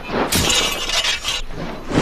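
Heavy staff swung through the air, a film fight sound effect: one harsh whoosh about a second long, with a metallic jangle in it.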